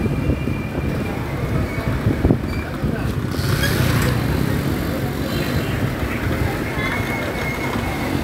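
Motorcycle engine running steadily while riding along a busy street, with traffic noise around.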